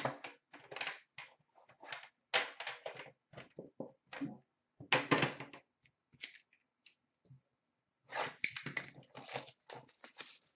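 Metal trading-card tins being handled and set down on a glass counter: irregular clusters of short knocks, clicks and rustles, loudest at the start, about five seconds in, and again near the end.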